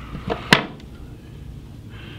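Fine fly-tying scissors snipping off a stray hackle stem: a soft click, then one sharp, crisp snip about half a second in.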